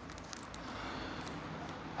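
Faint rustling of flexible black plastic air tubing being uncoiled by hand, with a few light ticks near the start.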